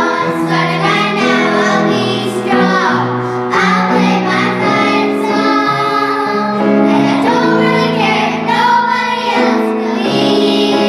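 A group of young girls singing a pop song together, with a held instrumental accompaniment under the voices.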